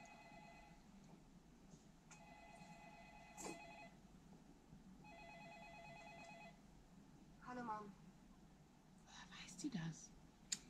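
A telephone ringing on a film's soundtrack, played through a TV and heard faintly across a small room: a trilling ring lasting about a second and a half, repeated twice after the tail of an earlier ring, with a pause of about a second between rings.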